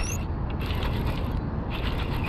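Baitcasting reel being cranked, its gears whirring and ticking as a lure is reeled in.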